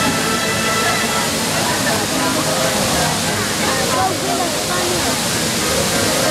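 Steady rush of a large illuminated fountain's water jets spraying up and falling back into the basin, with people in the watching crowd talking over it.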